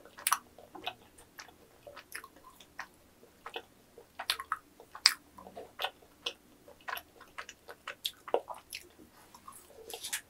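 Chewing of yakgwa, a chewy Korean honey cookie, heard as irregular short mouth clicks several times a second.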